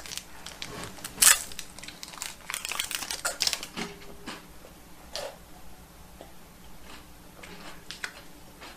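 Plastic wrapper of a Binz chocolate-coated biscuit crinkling and tearing as it is opened, with a sharp crackle about a second in. Then fainter chewing of the biscuit.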